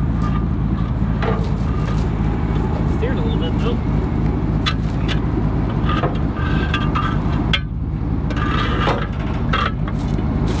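A truck engine idling steadily, with a few scattered metallic knocks and clanks.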